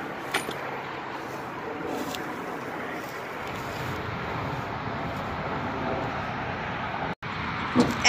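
Steady outdoor background noise, a hiss and rumble of the kind that wind and distant traffic make, with a light click about a third of a second in. It cuts off abruptly near the end.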